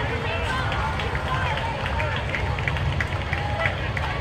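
Spectators chattering in a street crowd over a steady low drone from slow-moving parade trucks.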